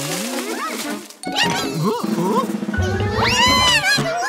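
Cartoon background music, with a cartoon character's loud, voice-like cry rising and falling about three seconds in.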